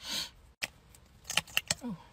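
A short breathy rush, then a quick run of sharp plastic clicks about a second and a half in as a liquid concealer tube is uncapped and its applicator wand pulled out. A brief sound dropping in pitch follows near the end.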